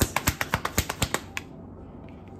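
A tarot deck being shuffled by hand: a quick run of card clicks and flicks that stops about a second and a half in.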